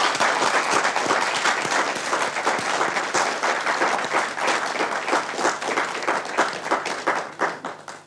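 Studio audience applauding, a dense patter of many hands clapping that thins and fades out near the end.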